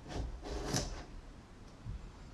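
Chef's knife slicing through a cucumber and knocking on a wooden cutting board: a few short cuts, the loudest under a second in.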